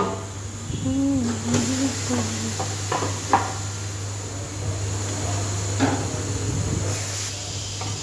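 Compressed air hissing in spurts from a tyre-inflation hose at the wheel's valve, over a steady low workshop hum.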